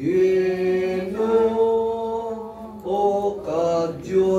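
Chanted singing at a Catholic Mass: a voice holding long, steady notes that step to a new pitch every second or so, with a short break about three seconds in.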